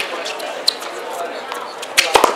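Tennis ball hits during a doubles rally: a faint knock about two-thirds of a second in, then a sharp racket strike at the very end, over a low murmur of spectator chatter.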